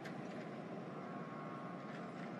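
Faint, steady street-traffic ambience: an even background hum with nothing rising or falling.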